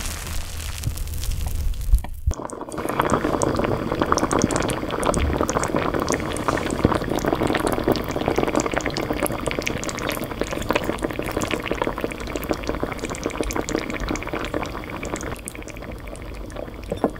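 Steamed rice scooped with a plastic rice paddle for about two seconds. After a short break, a pot of braised kimchi and pork belly bubbles at the boil as a dense, steady crackle of small pops, which thins near the end.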